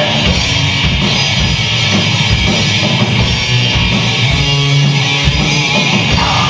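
Live rock band playing an instrumental passage: electric guitar, bass guitar and drum kit, with a steady cymbal beat about twice a second and no vocals.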